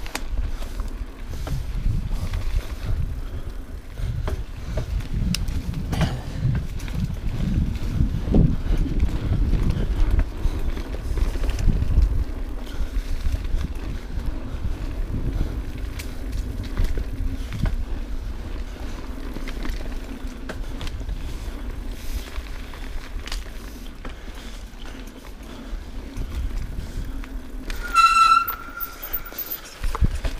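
Mountain bike riding down a rough dirt singletrack: a constant rumble of wind and tyre noise on the camera with rattling knocks from the bike over roots and rocks, heaviest in the first dozen seconds. Near the end, a brief high-pitched squeal with ringing overtones.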